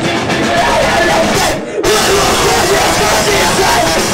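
Live ska-core band playing loud, with drum kit and distorted electric guitar. The band cuts out briefly about a second and a half in, then comes straight back in.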